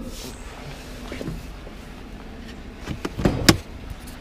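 Chevrolet Silverado engine idling low and steady, heard from inside the cab. About three seconds in comes a quick run of sharp clicks, ending in a louder clack as the hood release lever is pulled.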